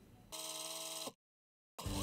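A steady electronic buzzing tone lasting under a second, cut off abruptly. After a short dead silence, music starts near the end.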